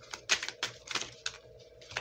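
A run of light, irregular clicks and taps, several a second at first and sparser later, like tapping on a keyboard, over a faint steady hum.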